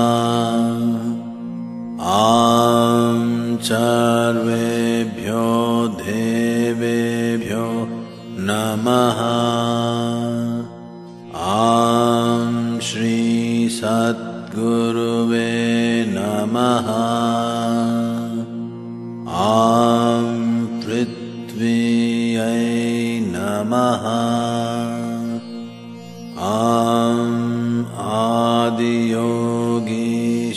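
A male voice chanting Sanskrit mantras of the 'Aum … Namaha' kind in long melodic phrases over a steady drone. About five short breaks between phrases.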